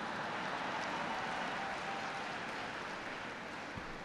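Audience applauding, swelling in the first second or two and then slowly dying away.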